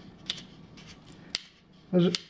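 A few faint, sharp clicks and taps from hands handling a Magpul PRS Gen 3 polymer rifle stock.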